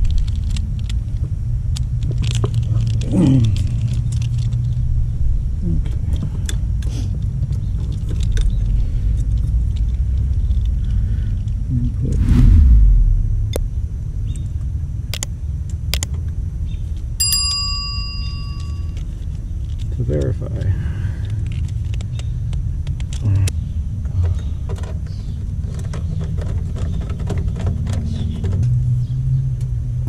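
A steady low rumble runs under small clicks from a screwdriver and wire connectors being handled, with a louder low thump about 12 seconds in. About 17 seconds in, a bell-like chime rings for a second or two: the sound effect of a subscribe-button animation.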